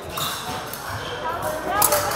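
Busy fencing hall: background voices echoing in a large room, with footwork thuds on the strips and a few sharp clicks near the end.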